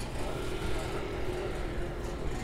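Steady low background rumble with a faint, steady hum coming in just after the start.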